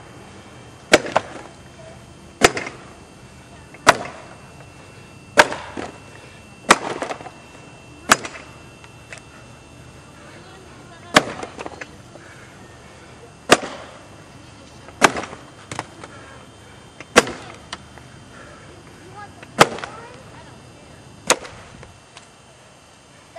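An axe chopping into a log in an underhand chop: about a dozen sharp, loud strikes, roughly one every one and a half to two seconds, with a longer pause near the middle. Several strikes are followed by a quicker, lighter knock.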